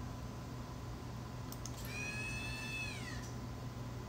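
Motorised insertion of an EDAX r-TEM Si(Li) EDS detector into the transmission electron microscope column. A couple of faint clicks are followed by a high, whining tone lasting about a second, which slides down in pitch and stops.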